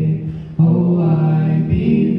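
Three young male voices singing a cappella in harmony into handheld microphones, holding long notes, with short breaks about half a second in and again near the end.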